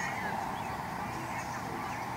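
A few faint honking bird calls over a steady background rumble and hiss.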